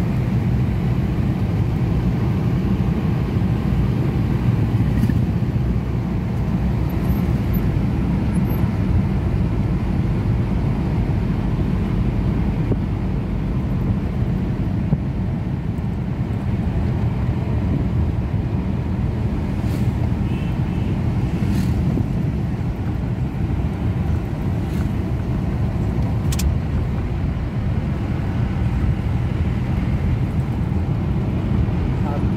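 Steady low rumble of a road vehicle's engine and tyres, heard from inside the cabin while it drives along, with a few faint clicks in the second half.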